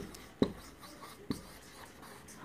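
Marker pen writing on a whiteboard: quiet scratching strokes with two sharp taps, about half a second in and again past the middle.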